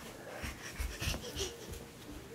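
A flat-faced dog breathing noisily, with a few low thumps in between.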